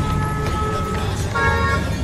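Vehicle horns honking in street traffic: one long, single-pitched honk lasting about a second, then a shorter honk sounding several notes at once about halfway through, over a steady low rumble.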